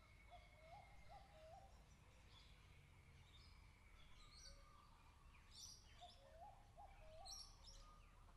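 Faint bird calls over a low steady rumble: a short phrase of three quick rising notes near the start, repeated about six seconds in, with higher, sharper chirps between.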